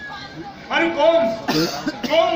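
A voice speaking in drawn-out, held phrases, broken by a short cough about one and a half seconds in.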